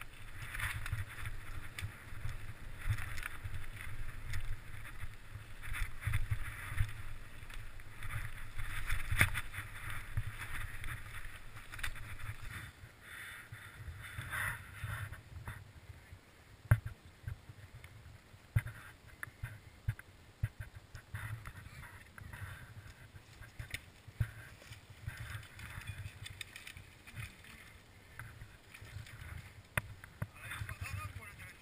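Mountain bike clattering and rattling over stones as it rides down a rocky trail, for roughly the first twelve seconds. After that it is quieter, with scattered sharp clicks and knocks.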